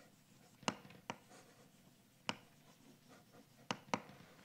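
Chalk writing on a blackboard: five sharp taps as the chalk strikes the board, two in the first second, one about two seconds in and two close together near the end, with faint scratching strokes between.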